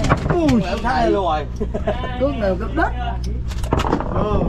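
People's voices talking over a steady low hum, with a few sharp knocks, most of them near the end.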